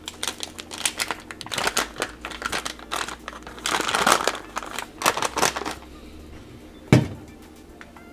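Plastic-laminate MRE drink-powder pouch crinkling as it is handled in the hands, with a denser tearing rasp about halfway through as it is torn open. A single sharp knock comes near the end.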